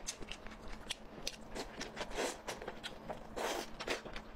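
Close-miked chewing and biting of food: a run of short, wet, crisp mouth clicks and crunches, with a longer, noisier burst about three and a half seconds in.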